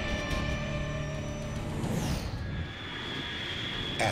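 Segment-transition music bed: held synthesizer tones, a falling whoosh about two seconds in, then a thin high sustained tone.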